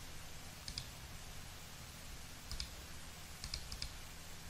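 Computer mouse button clicking a few times, each click a quick press-and-release tick, with the last clicks close together.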